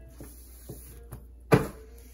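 Tarot cards and decks being handled on a tabletop: a few light taps and a brief rustle, then one sharp knock about one and a half seconds in.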